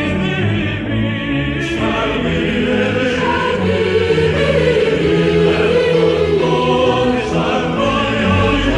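Background music: a choir singing in long held notes over instrumental accompaniment.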